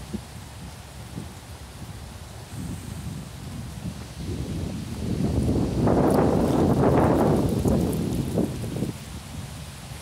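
Wind gusting with rustling leaves: a rushing noise that builds about five seconds in, is loudest for a couple of seconds, then eases off.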